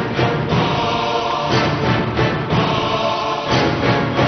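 Dramatic theme music with choir and orchestra, punctuated by a heavy hit about once a second.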